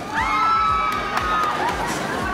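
Several riders on a drop tower screaming together as the gondola falls: long, high overlapping screams that start just after the opening moment, over a steady music beat.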